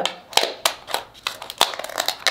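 Scissors snipping through the hard shell of crab legs: an uneven run of sharp snips and cracks, several a second.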